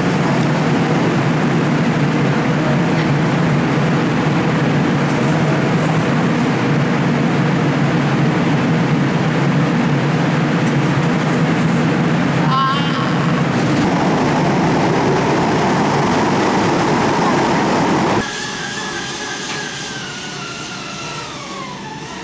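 Loud, steady machine-like noise that drops suddenly about three-quarters of the way through to a quieter hum, with a whine falling slowly in pitch near the end.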